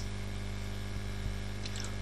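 Steady electrical mains hum with a low buzz in the recording, between spoken lines, with a faint keyboard click a little past the middle.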